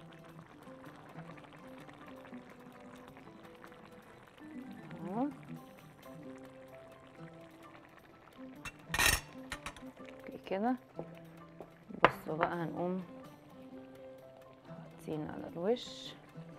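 Soft background music with held notes, broken by one sharp clink of a metal kitchen utensil about nine seconds in, with a few brief bits of voice.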